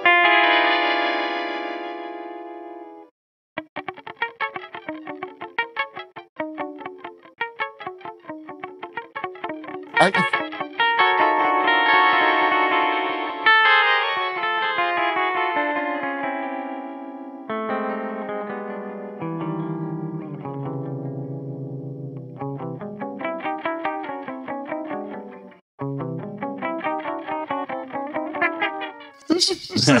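Gibson Les Paul electric guitar played in short phrases through an EarthQuaker Devices Time Shadows delay, whose two parallel delays pitch-shift every repeat. Each note spills into a stepped cascade of echoes climbing and sinking in pitch. The effect piles up into chaos with no sense of tempo or key, like an 8-bit video game.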